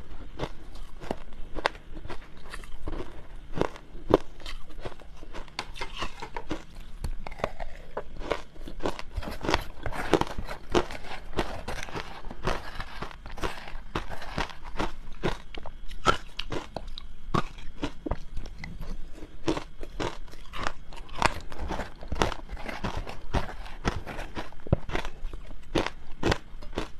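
Ice mixed with matcha powder being chewed and crunched close to a clip-on microphone: a dense, unbroken run of crisp crunches, several a second.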